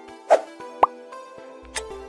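Background music with steady sustained notes, overlaid with quiz sound effects. A short swish about a third of a second in is followed by a quick rising pop or plop, and near the end the first tick of a once-a-second countdown timer.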